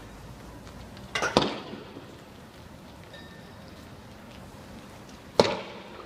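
Sharp cracks of tear-gas fire in a smoke-filled street: a quick cluster of three about a second in, and a single loud one near the end, each echoing briefly.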